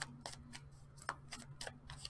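Faint, irregular clicks and taps of a tarot deck being handled and shuffled, a few a second, over a low steady hum.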